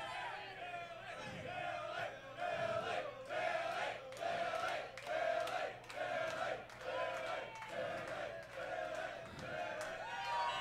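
Concert crowd chanting in unison: one short shout repeated evenly, about twice a second.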